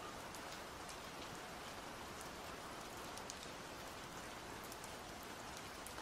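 Faint steady rain, with scattered light drop ticks.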